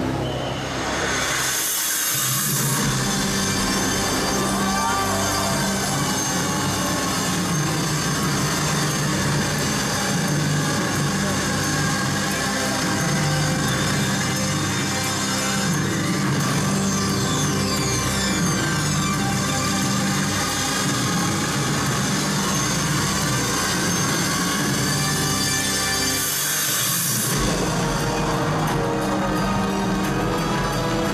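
Music and a voice from the soundtrack of a light-and-water show, over a steady hiss, with surges of rushing sound about two seconds in and again near the end.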